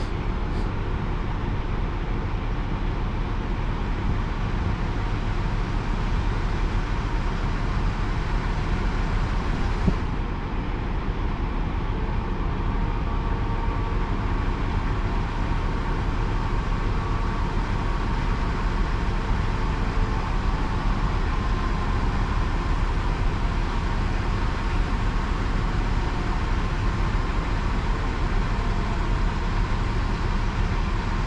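Diesel engine of a Grove mobile crane running steadily under load while it holds a suspended chiller of about 125,000 lb.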